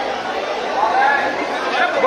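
Crowd chatter: many voices talking at once, overlapping, with no single speaker standing out.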